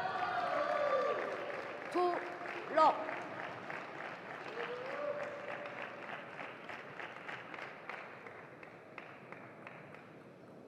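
Spectators clapping and cheering after a rally-ending point in a table tennis match, with a few loud shouted calls in the first three seconds. The clapping then fades away gradually.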